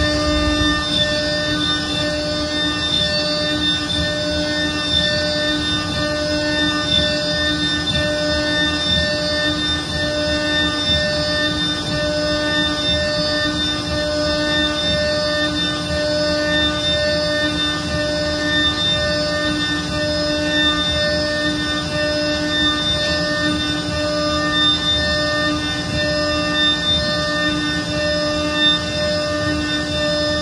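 Okuma Blade T400 mill-turn spindle driving a six-flute ceramic end mill at 18,000 rpm, dry-milling Inconel 718: a steady whine of spindle and cut that holds unbroken, without pauses.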